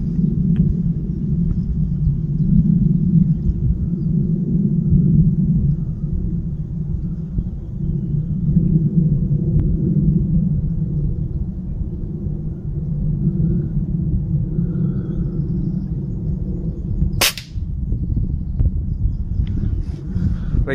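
A single shot from a .22 Reximex Zaphir air rifle near the end, one sharp crack, over a steady low rumble.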